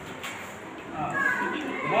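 A group of children's voices, faint and overlapping, in a large hall.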